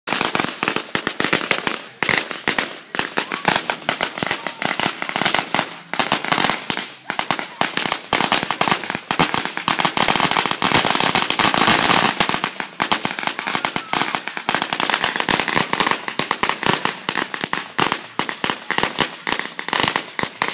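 Firecrackers going off at ground level in a long, rapid string of sharp pops and crackles, with a denser hissing stretch about halfway through.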